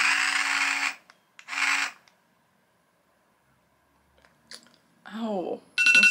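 Small pump motor of a handheld electric lip-plumping suction device, a steady hum with hiss, switching off about a second in, then running again for about half a second.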